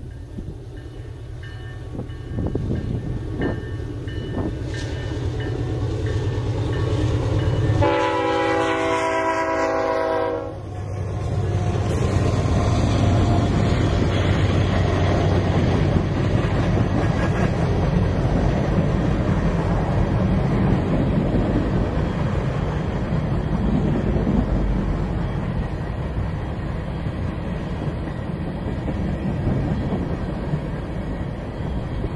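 Freight train's diesel locomotives approaching with their engines running, then one locomotive horn blast about eight seconds in, lasting about two and a half seconds. After it the locomotives pass and the freight cars roll by with a steady rumble of wheels on rail.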